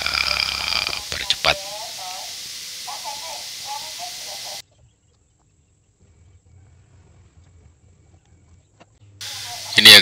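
Faint voices and a low hum, then a cut to dead silence a little under halfway through; faint low noise returns near the end.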